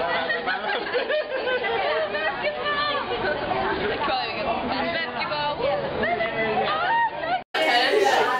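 Several people talking at once in overlapping group chatter. About seven and a half seconds in it cuts off abruptly for a moment and louder voices take over.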